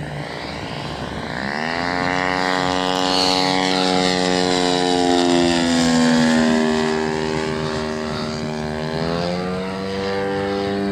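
The DLE-111 twin-cylinder two-stroke gas engine and propeller of a 100cc-class radio-controlled Yak aerobatic plane in flight. The engine note climbs about a second and a half in and is loudest around the middle. It dips in pitch after that and climbs again near the end.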